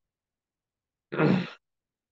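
A man's short sigh, about half a second long, coming after a second of silence.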